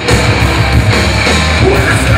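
A live heavy rock band comes in loudly all at once at the start, with distorted electric guitar and a pounding drum kit that replace a quieter passage of held notes.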